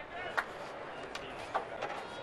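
Ballpark crowd murmur with indistinct voices, broken by a few sharp clicks, the loudest about half a second in.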